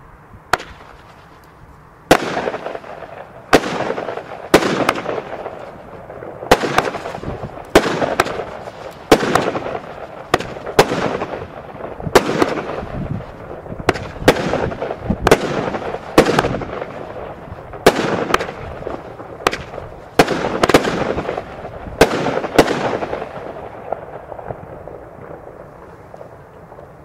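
A consumer firework battery (Jorge Kasjopeja, 16 shots of 20 mm comets and chrysanthemums) firing: a string of sharp bangs about one to two seconds apart, starting about two seconds in and ending near the end, each trailing off in a rushing noise.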